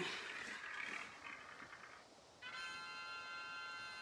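A random number picker app on a tablet plays its draw sound: a hissing rush that fades over the first couple of seconds, then, about two and a half seconds in, a steady electronic tone of several notes held together as the number comes up.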